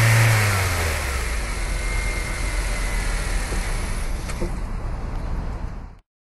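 Car engine note over the logo end card: a steady engine tone that drops in pitch about half a second in, as if passing by, then trails off into a fading rush of noise.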